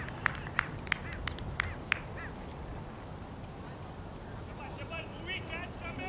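A person clapping their hands in a steady rhythm, about three claps a second, which stops about two seconds in. Near the end come several short, high, chirping calls.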